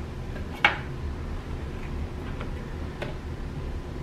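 A few light taps and clicks as pre-cut cookie dough rounds are set down on a metal cookie sheet: one sharper click under a second in, two fainter ones later, over a low steady hum.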